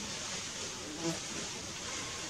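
Steady high-pitched insect buzzing from the surrounding forest, with a short faint knock about a second in.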